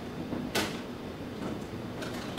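A plastic storage drawer knocking once, sharply, about half a second in, as it is slid open or shut.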